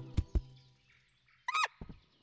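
A few soft taps, then, about one and a half seconds in, a brief honk-like cartoon animal squeak whose pitch wavers up and down.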